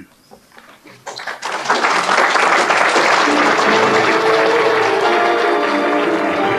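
Audience applause building up about a second in, with the programme's theme music fading in over it about halfway through, in held notes.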